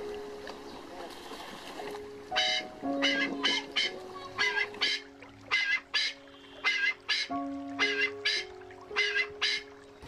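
Background music with slow sustained chords throughout, and from about two seconds in, a run of short, loud bird calls, two or three a second.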